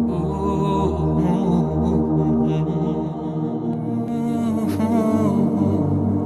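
Background vocal music: a slow, chanted humming melody over a steady sustained drone.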